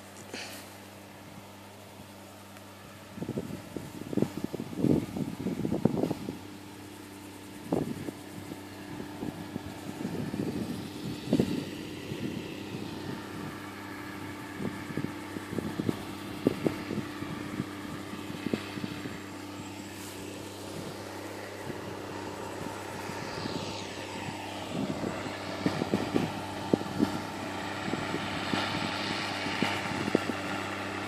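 Distant farm tractor's diesel engine running steadily under load as it pulls a tillage implement across a stubble field, heard as a low drone whose pitch shifts in the later part as the tractor comes closer. Irregular crackling bursts break in over the drone.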